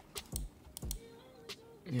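A few separate taps on a computer keyboard, about four in two seconds at uneven spacing.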